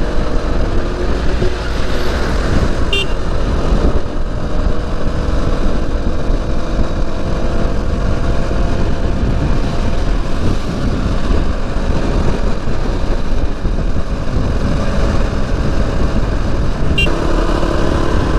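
Motorcycle running steadily at highway speed, its engine note under heavy wind rush on the microphone.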